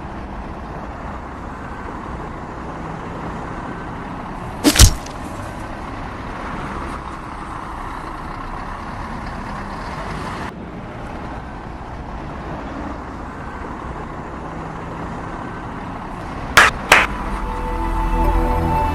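Steady road-traffic noise from passing vehicles. A sharp double click comes about five seconds in and another near the end.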